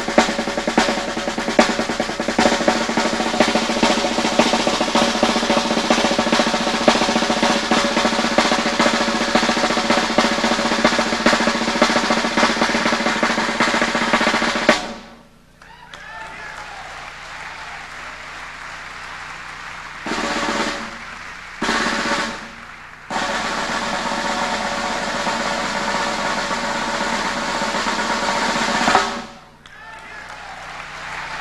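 Snare drum played with sticks in a fast, unbroken stream of strokes that cuts off suddenly about halfway through. A quieter stretch follows with two short loud bursts, then fast playing starts again and stops shortly before the end.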